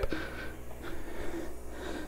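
Quiet room tone with a steady low hum and a soft hiss.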